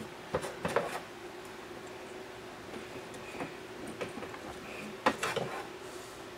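Wooden beehive frame parts knocking against each other and the frame jig as they are handled and set in place: a few light knocks just after the start and a short cluster of them about five seconds in, over a steady faint hum.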